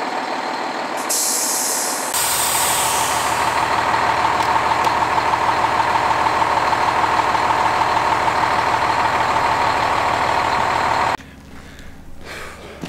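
Heavy diesel water truck idling steadily, with a short hiss of air from its air brakes about a second in. The engine sound gets louder at about two seconds and stops abruptly near the end.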